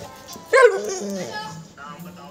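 Pit bull barking: one loud bark about half a second in that trails off, then a softer bark near the end.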